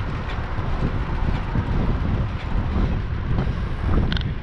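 Wind buffeting the microphone of a bicycle-mounted camera while riding, a steady low rumble mixed with road noise and a few faint rattling clicks.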